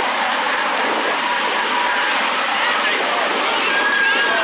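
Monster truck engines running across the track as a loud, steady noise, with crowd voices mixed in.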